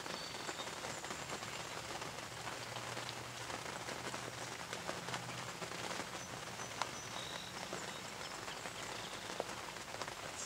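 Steady patter of rain, with scattered sharper drop ticks, two of them louder in the second half.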